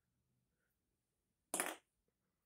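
A single short, forceful burst of breath from a person smoking, about a second and a half in, after near silence.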